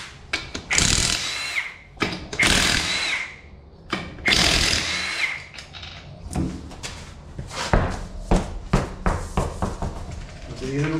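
Impact wrench with a 19 mm wheel nut socket undoing a car's wheel nuts: three runs of about a second each, the motor's whine dropping away as each one stops. A string of sharp clicks and knocks follows in the last few seconds.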